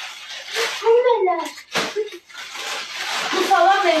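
Plastic shopping bags and snack packets rustling and crinkling as they are handled and unpacked, with a couple of sharp crackles about two seconds in and voices talking over it.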